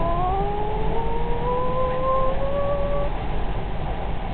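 Rising whine of an electric train's traction motors as the train picks up speed, over a steady low rumble heard inside the car. The whine climbs slowly in pitch and fades out about three seconds in.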